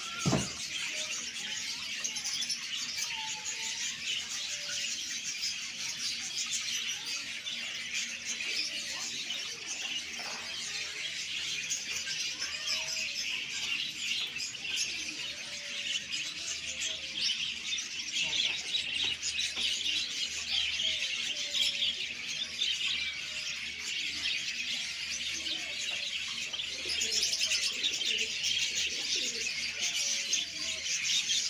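Many caged birds chirping at once: a dense, unbroken high twittering with scattered lower calls among it. A short falling cry at the very start is the loudest sound.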